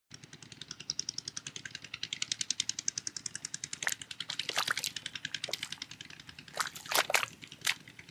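A large fish flapping on wet, weed-covered mud, giving wet slaps and splashes from about four seconds in, loudest near the seven-second mark. Under it, a fast, even ticking at about ten a second runs through the first six seconds.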